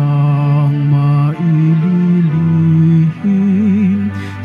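A slow hymn sung by a low male voice in long held notes, changing pitch a few times, with short breaks between phrases and a wavering vibrato on the last note. It is typical of the hymn sung while Communion is given.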